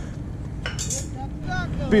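Brief snatches of men's talk and a laugh near the end, over a steady low rumble.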